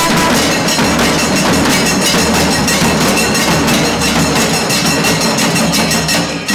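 Kailaya Vathiyam temple ensemble of barrel drums and hand cymbals playing a fast, dense beat, with conch and curved-horn tones held over it.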